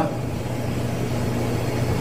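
A steady low hum with a faint even hiss underneath.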